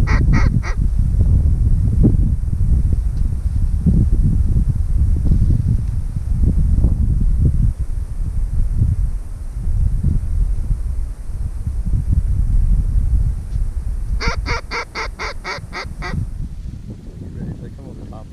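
Two rapid runs of goose honks, about eight honks each in under two seconds, one right at the start and one about fourteen seconds in, over a loud, gusty wind rumble on the microphone that eases near the end.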